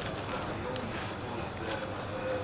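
Quiet room noise with faint background voices, and a few soft clicks and crinkles as a paper-wrapped flatbread is bitten into and chewed.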